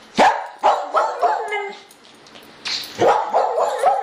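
A dog barking in quick runs of short barks, with a pause of about a second in the middle.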